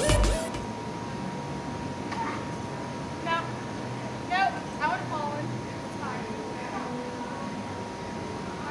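Edited-in music cuts off just after the start, leaving a low outdoor background with a faint steady tone, over which a few short, faint voice calls come and go.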